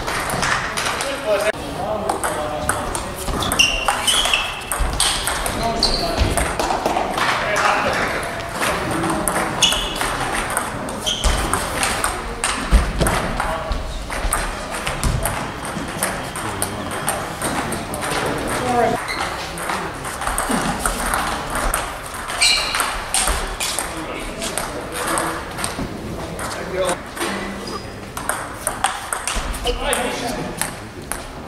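Table tennis balls being hit and bouncing: many short, sharp clicks of celluloid-type balls on bats and tabletops at irregular intervals, from the filmed table and others around it, with voices in the background.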